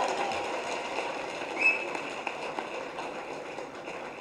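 Low, steady background noise of a large hall during a pause in the talk, fading slightly, with one brief faint tone about a second and a half in.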